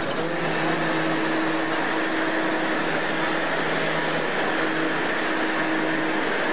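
Steady mechanical hum with a few held tones from a New York City subway train standing at a station platform.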